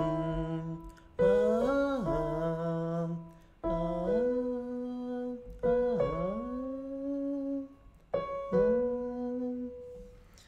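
Vocal warm-up exercise: a voice sings short phrases over piano notes, about one every two seconds. Each phrase swoops up or dips before settling on a held note.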